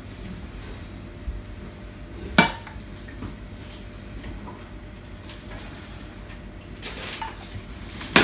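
Silicone spatula scraping a small stainless steel saucepan, emptying it into a pot of mashed potato, with light clatter of cookware. A single sharp metal clank about two and a half seconds in, and a few smaller knocks near the end.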